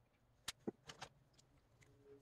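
Faint clicks and taps of a small plastic acrylic-paint bottle being handled and squeezed out onto a paper plate: a few short, sharp ticks from about half a second to a second and a half in, otherwise near silence.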